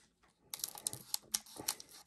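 Scissors snipping across the top of a foil trading-card pack: a quick, irregular run of sharp, crisp clicks starting about half a second in.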